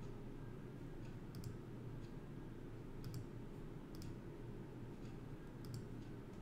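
Faint clicks of a computer mouse or trackpad, mostly in close pairs, four or five times over a low steady room hum.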